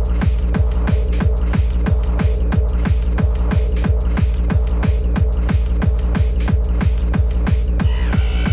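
Hard techno at 182 bpm: a kick drum on every beat, about three a second, each kick falling in pitch, over a steady held synth tone.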